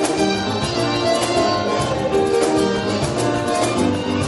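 Live music on violin and guitar: a bowed violin melody over a steady rhythmic beat.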